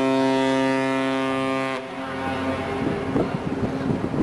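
A passenger ship's horn sounding one long, steady, low blast that cuts off about two seconds in, announcing the ship's arrival in port. A rough, uneven background noise follows.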